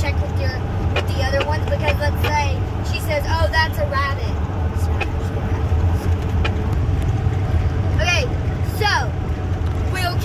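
Steady low road and engine rumble inside the cabin of a moving vehicle. Children's voices talk over it during the first few seconds and again briefly near the end.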